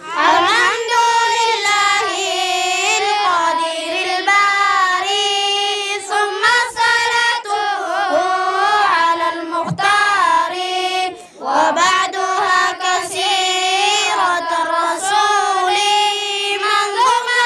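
A group of boys chanting Arabic verse together to a melodic tune. There is a short breath pause between lines about eleven seconds in.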